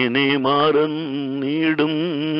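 A man singing a Malayalam Christian devotional song, a single voice holding long notes with a wide, wavering vibrato.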